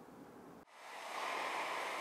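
Near silence, then about two-thirds of a second in a steady hiss of factory-floor noise from a large fabrication workshop rises quickly and holds.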